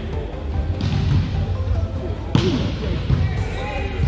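Busy gym ambience during volleyball play: background chatter of players and spectators, with volleyballs thudding off hands and the floor, the sharpest hit about two and a half seconds in.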